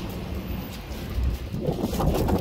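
Outdoor noise with wind buffeting the phone's microphone in a low rumble. A louder rustling noise starts near the end.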